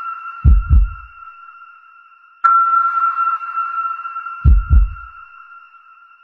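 Edited-in suspense sound effect: a held high tone with a double heartbeat thump, heard twice about four seconds apart.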